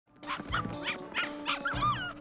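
Cartoon puppies yipping: a quick run of short, high yips over light background music.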